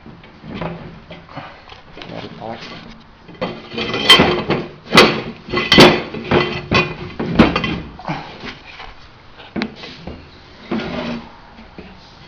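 Copper tubing and fittings being handled, knocking and clinking against each other and the tabletop as the inner pipe is slid into the outer water-jacket pipe. There are several sharp knocks between about four and eight seconds in.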